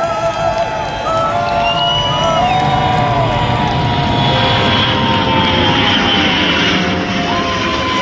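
A four-engine military jet transport flying low overhead, its jet roar building to its loudest as it passes about four to seven seconds in, with engine tones gliding downward in pitch as it goes by.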